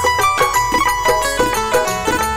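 Instrumental interlude of a live Rajasthani folk bhajan: a quick melodic line of short held notes over a steady dholak beat.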